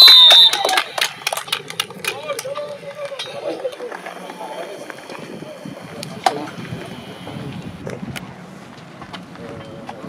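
A referee's whistle blast that cuts off about half a second in, followed by faint, distant voices of players across an open pitch, with a few sharp knocks.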